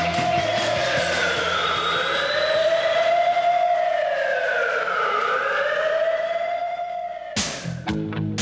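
A siren wailing, its pitch slowly rising and falling about three times, over the tail of a rock song that fades out in the first couple of seconds. Near the end the wail cuts off and new music starts with loud drum hits.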